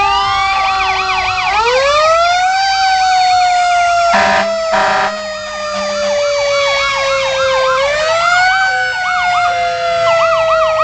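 Fire engine sirens passing close by. One wailing siren climbs steeply twice and slowly falls in between, over a faster warbling siren that cycles several times a second. Two short blasts of the truck's horn come about four and five seconds in.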